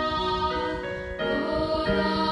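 Female vocal trio singing a gospel song with long held notes, moving to a new, fuller chord a little over a second in.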